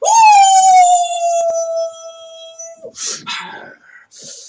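One long howl that swoops up at once and then sinks slowly, held for nearly three seconds before cutting off, followed by short breathy, grunting sounds.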